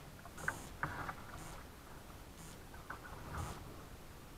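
Quiet sounds of a plastic kayak on slow water: a few light knocks against the hull, mostly in the first second and again near the end, with soft splashes roughly once a second.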